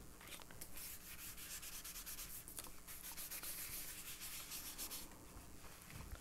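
A tissue rubbing soft pastel over embossed paper in faint, quick strokes that die away about five seconds in. The rubbing smudges the pastel across the paper to bring out the veins of a leaf pressed into it.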